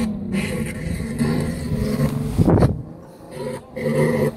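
Toyota 2JZ straight-six engine of a drag-racing Datsun running as the car pulls away down the strip, after hesitating on the launch. There is a brief loud burst of noise about two and a half seconds in, and the engine sound dips just after it.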